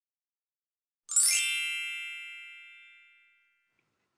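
A bright chime sound effect: a quick flurry of high, bell-like notes about a second in, ringing on and fading away over about two seconds.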